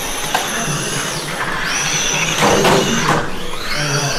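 Electric 1/12-scale RC pan cars racing, their motors whining high and the pitch falling and rising again several times as the cars brake and accelerate.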